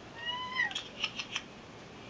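Tabby cat meowing once, a drawn-out meow that drops in pitch at its end, followed by about four short clicks.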